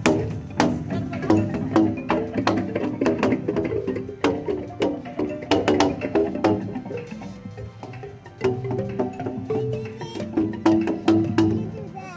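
Outdoor tuned-pipe instrument of stainless steel U-bend tubes, its open ends slapped with rubber paddles, giving an irregular run of short pitched notes, several a second. The playing thins out briefly about two-thirds of the way through, then picks up again.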